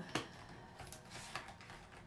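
Faint scratching and light ticks of a brush pen working on paper card, with one sharper click just after the start.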